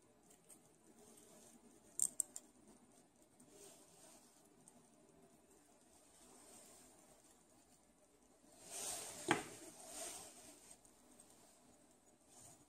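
Quiet handling sounds at a lab bench: a few small, sharp clicks about two seconds in, then a brief rustle with a single sharp tap about nine seconds in.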